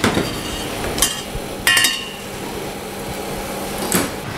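Stainless-steel saucepan handled on a glass cooktop: a knock right at the start and another about a second in, then a sharp, ringing metallic clink just before the middle, over a steady low hum.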